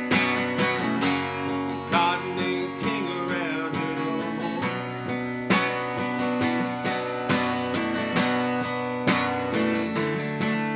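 Acoustic guitar strummed in steady chords, an instrumental passage of a country-folk song with no singing.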